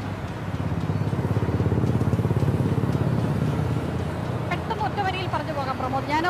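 A motor vehicle's engine running close by with a rapid, even pulse. It grows louder and then fades, as if passing. Speech resumes near the end.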